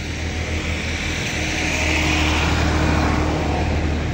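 A motor engine running steadily with a low drone, and a hiss that swells around the middle and eases off toward the end.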